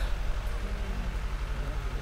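A low, steady background hum and rumble, well below the level of the voice either side.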